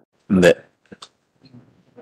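A man's short wordless vocal sound, rising in pitch and lasting about a quarter of a second, in a hearing room. It is followed by two faint clicks about a second in.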